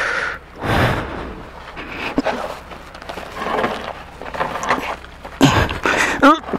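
A man breathing hard and straining while pushing a heavy motorcycle backward by hand over sandy ground, in irregular gusts of breath with a few small scuffs and knocks.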